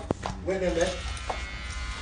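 A man's voice saying a few words, with a few sharp knocks from a handheld phone. A faint steady buzz comes in about halfway.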